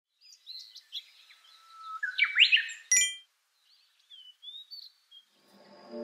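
Birds chirping in short rising and falling calls, with a single bright ding about three seconds in. Music fades in near the end.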